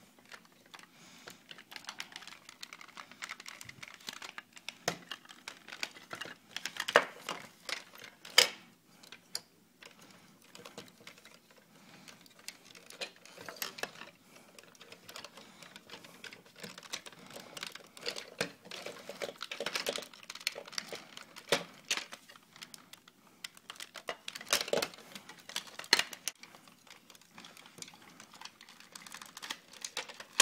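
Hard plastic clicking and clacking as the parts of a large Ultimate Bumblebee Transformers figure are folded, turned and snapped into place by hand, with irregular small clicks throughout. Louder snaps come about seven and eight seconds in and again near twenty-five seconds.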